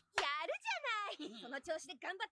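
Anime dialogue playing at low volume: an excited cartoon character's voice with wide, swooping pitch, plus a short "yeah" from a man.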